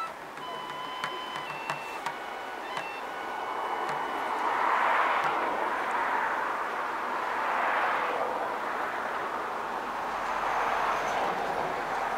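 A flute's last held notes fade in the first few seconds, with a few sharp clicks; then surf washes on the shore in slow swells that rise and fall about every three seconds.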